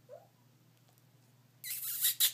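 A four-week-old Goldendoodle puppy's brief, faint rising squeak at the start, then near silence, broken near the end by a louder breathy hiss.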